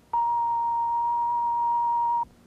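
Emergency broadcast alert tone sent over the air to switch on special emergency receivers. It is one steady, unwavering beep that begins a moment in and holds at a constant pitch.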